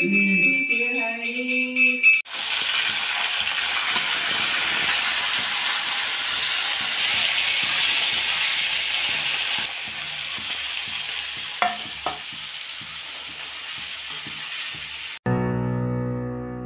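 Diced potatoes and tomatoes frying in a kadhai, a steady sizzle that eases to a softer hiss a little past halfway, with two light clicks near the end.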